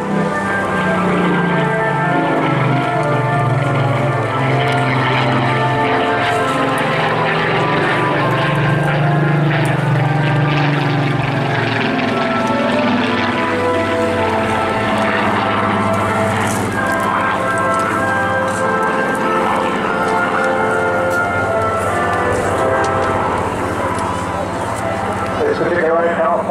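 Rolls-Royce Griffon V12 engine of a Spitfire PR Mk XIX in a flying display pass, a loud steady drone. Its pitch drops twice, about six and twelve seconds in, as the aircraft passes and moves away.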